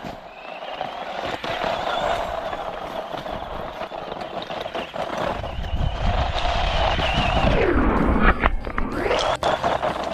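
DEERC HS14331 RC car's electric motor whining steadily as it is driven, its pitch sliding down sharply and rising again near the end as the throttle is eased off and reapplied.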